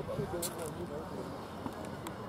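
Indistinct voices of players and spectators talking, over steady outdoor background noise, with a sharp click about half a second in.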